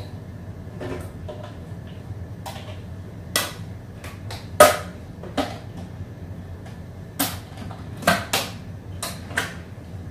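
Household handling knocks from loading a Ninja blender: a spoon tapping on a plate, cooked potato pieces dropping into the plastic pitcher, and the lid clicking on. The knocks come singly, the loudest about halfway through, with a few more near the end.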